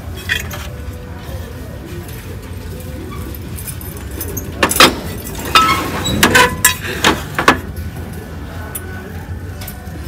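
Ceramic planter clinking and knocking against the shelf and the ornaments beside it as it is picked up and handled, with a cluster of sharp clinks between about five and seven and a half seconds in. Store background music and a low steady hum run underneath.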